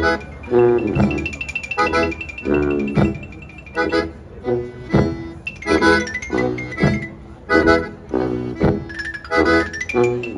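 A live klezmer band playing a lively tune, with accordion, violin, marimba and sousaphone over a bass drum and cymbal keeping a steady strong beat.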